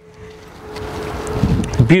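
Wind buffeting the microphone outdoors: a rushing noise that swells over the two seconds, with low rumbling gusts near the end.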